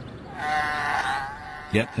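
A sea lion calling: one bleat-like cry of about a second, its pitch wavering slightly.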